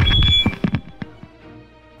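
A microphone drop: a heavy thump with a brief high feedback squeal, followed by a few clattering knocks over about a second as it settles. Background music plays underneath.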